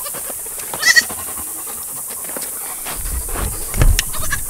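A newborn kid goat gives one short, high-pitched bleat about a second in. A low rumble follows near the end.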